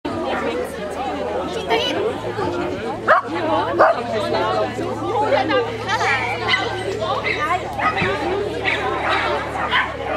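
A dog barking amid steady chatter of people's voices, with two sharp louder sounds about three and four seconds in.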